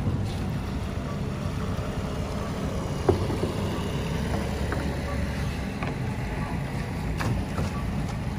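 A small boat moving through floodwater: a steady low rumble of water and wind on the microphone, with a sharp knock about three seconds in and a fainter one near the end.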